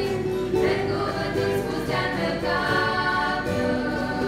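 A girls' group singing a sacred song together in several voices, accompanied by an acoustic guitar.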